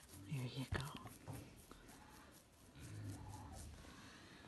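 Tamworth sow giving two soft, low grunts while being scratched behind the ear, a short one near the start and a longer one about three seconds in, with a sharp click and faint rustling in between.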